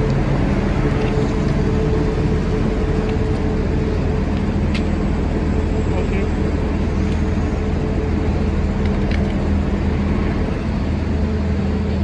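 Bus engine idling close by: a steady low hum that holds even throughout.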